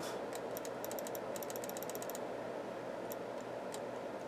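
A computer mouse button clicked rapidly over and over for about two seconds, then twice more singly, over a steady background hum.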